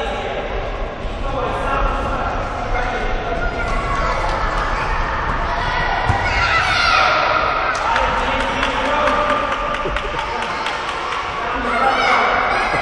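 Young children shouting and calling out over one another during an indoor football game in a large sports hall, louder and higher-pitched from about halfway, mixed with short thuds of the ball being kicked and bouncing and of feet on the hall floor.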